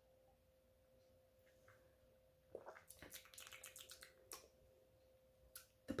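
Near silence with faint mouth sounds of tasting wine: a quick run of soft clicks and smacks of the lips and tongue about two and a half seconds in, and one more click a little later, over a faint steady hum.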